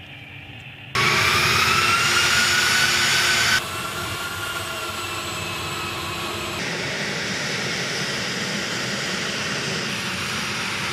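A-10 Thunderbolt II's twin turbofan engines whining on the ground, cutting in loudly about a second in with a whine that rises in pitch. The sound then drops suddenly to a steadier, quieter jet whine, with another abrupt change partway through.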